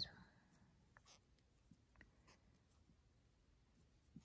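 Near silence with a few faint ticks and scratches: a small steel crochet hook pulling fine cotton thread through stitches while working double crochets.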